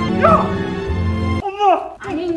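Film soundtrack: a tense music score with a heavy low drone, and a voice calling out over it early on. The music cuts off abruptly about a second and a half in, leaving a man's muffled, strained cry forced out around a rope clenched in his teeth.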